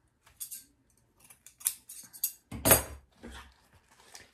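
Metallic wired ribbon being handled and pulled, rustling and crinkling, with scattered light clicks. One louder sharp knock comes about two and a half seconds in, as scissors are put down on the cutting mat.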